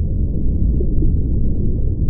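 A steady, loud low rumble with no clear pitch or beat.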